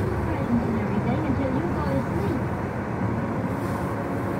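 Steady low rumble of a car's engine and tyres heard from inside the cabin while driving slowly over snow, with a voice from the car radio over it through the first half.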